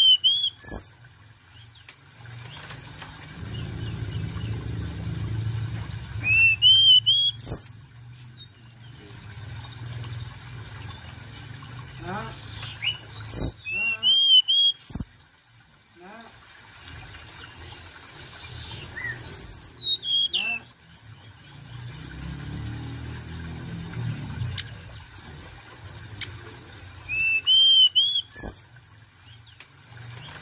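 Hill blue flycatcher (tledekan gunung) singing: short phrases of clear, rising and falling whistles, repeated about every six to seven seconds. A low rumble swells in the background twice.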